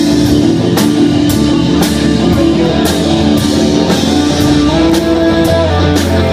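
Live country-rock band playing an instrumental passage: electric and acoustic guitars with held notes over a full drum kit, cymbals struck at a steady beat.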